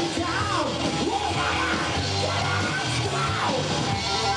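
Hard rock band playing live with two electric guitars, bass and drum kit. High notes glide downward twice, about half a second in and again near the end.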